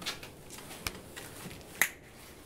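A few short, sharp clicks over quiet room tone, the loudest one just before the end.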